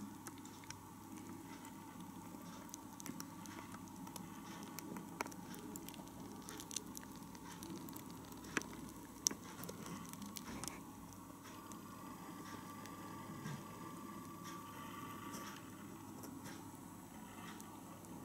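Achatina (giant African land snails) eating orange flesh: faint, incessant wet chomping, with scattered small clicks as they rasp at the fruit.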